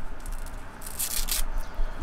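A dog's boot being pulled off its paw: a short rasping rip about a second in, with soft rustling around it.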